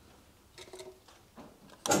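A few faint small handling sounds, then just before the end a pillar drill's 6 mm bit suddenly starts a loud rattling chatter as it bites into thick stainless steel at the drill's lowest speed: "not a happy drill".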